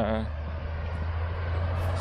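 A road vehicle passing close by: a steady low rumble with tyre and road noise that grows louder toward the end.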